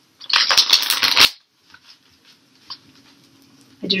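A deck of tarot cards riffle-shuffled: one quick burst of rapid flicking cards lasting about a second, followed by a few faint taps as the deck is squared.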